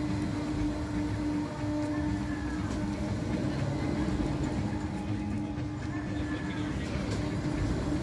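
Giant pendulum ride running as its gondola swings: a steady mechanical hum over a low rumble, with a faint whine that bends in pitch about every four seconds.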